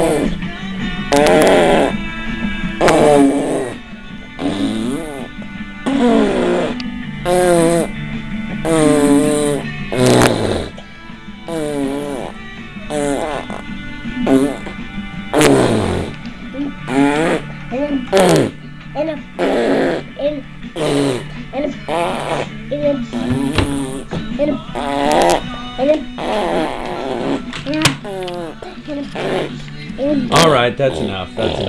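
A young girl's voice close to the microphone, making wordless sing-song noises that slide up and down in pitch, mixed with silly mouth noises.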